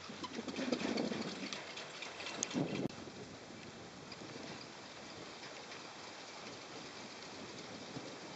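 Steady hiss of wind and riding noise on an open chairlift. There are a couple of low rumbling knocks in the first three seconds, then it settles into an even hiss.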